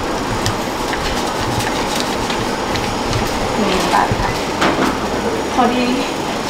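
Paper banknotes rustling and flicking as they are counted by hand, a series of short crisp clicks over a steady loud background noise. A few brief words are spoken near the end.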